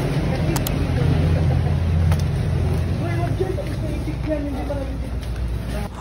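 Low rumble of road traffic, with a vehicle engine loudest about one to three seconds in and faint voices of people talking.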